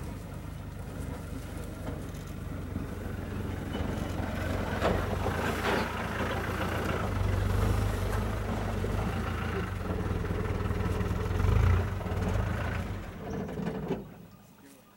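A vehicle engine idling with a steady low hum, growing louder midway, then cutting off abruptly at the end.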